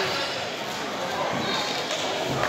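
Indistinct voices, spectators' and coaches' chatter and calls, echoing around a large sports hall.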